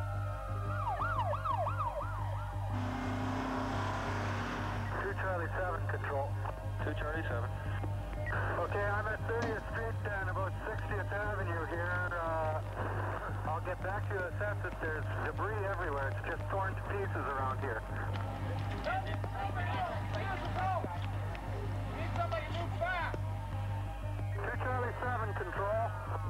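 Several emergency-vehicle sirens wailing and yelping over one another, their pitch sweeping up and down without pause, over a steady low hum.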